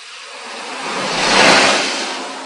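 Land Rover Discovery Series II passing close on a wet track, its tyres throwing up water spray: a rush of spray and tyre noise that swells to a peak about a second and a half in, then fades.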